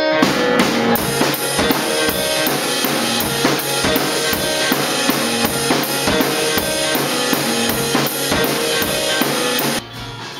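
Band music driven by a drum kit, with kick, snare and cymbals keeping a steady beat; it stops abruptly near the end.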